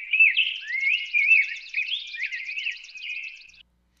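High-pitched chirping and warbling with quick up-and-down pitch glides and a fast ticking trill above them, like birdsong. It cuts off shortly before the end.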